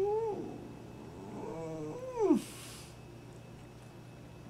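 A man's closed-mouth 'mm' moans of enjoyment while chewing: a short rising and falling hum at the start, then a longer one from about a second and a half in that slides down in pitch, followed by a brief breathy exhale.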